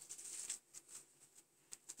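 Faint rustling and a few light ticks of hands handling a knitted piece, mostly in the first half second and again briefly near the end.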